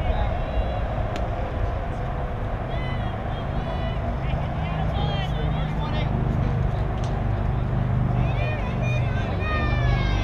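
Outdoor ball-field ambience: scattered high-pitched voices calling out, busier near the end, over a steady low rumble.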